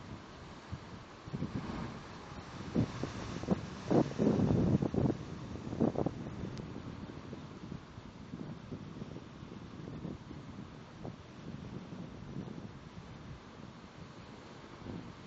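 Wind buffeting the phone's microphone over the steady wash of ocean surf churning into a rocky inlet, with a run of strong gusts from about three to six seconds in.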